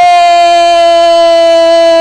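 Radio football commentator's long drawn-out goal cry, a single "gooool" vowel shouted and held at a steady pitch, calling a goal just scored. It starts just after a quick breath and slides a little in pitch near the end.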